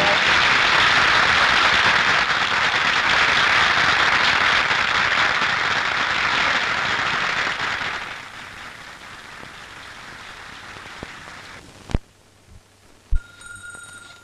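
Audience applauding loudly for about eight seconds, then dying away to a quieter hiss, with two sharp knocks near the end.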